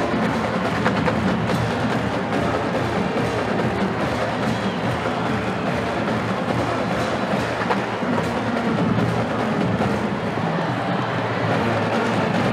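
College marching band playing on the field, with its drumline and percussion prominent.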